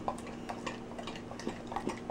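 A pit bull–Rottweiler mix lapping smoothie from a small bowl held in a hand: a run of quick, irregular wet licking clicks.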